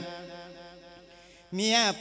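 A monk's amplified voice singing an Isan thet lae chanted sermon: a held sung note dies away over about a second and a half, then he comes back in with the next sung line.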